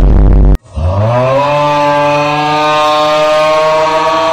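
A short, very loud burst of noise, then a long, loud 'AAAAA' scream that slides up in pitch over the first second and holds one note.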